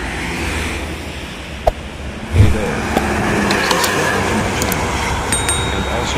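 Intercity bus driving past on a highway over steady traffic noise. Its engine and tyre noise swell suddenly about two and a half seconds in as it comes close, with the engine's pitch falling as it passes.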